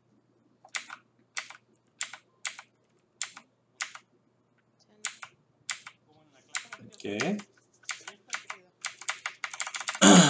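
Typing on a computer keyboard: separate keystrokes at a few per second, a short pause about four seconds in, then quicker keystrokes toward the end.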